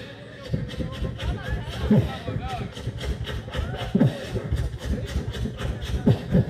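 Beatboxing into a handheld microphone: a rapid, evenly spaced run of sharp mouth clicks, with deep bass kicks that drop in pitch about two and four seconds in.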